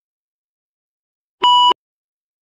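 A single short electronic beep, one steady high tone lasting about a third of a second, starting about one and a half seconds in.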